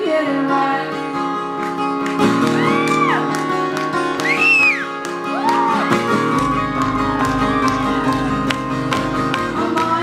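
Live acoustic band music: strummed acoustic guitars and banjo with a wordless melody rising and falling in long arcs over them. A low drum comes in about six seconds in.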